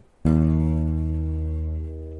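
Electric bass guitar: one low note plucked about a quarter second in, ringing on and slowly fading. It is played to let the change in tone from a turned control knob be heard.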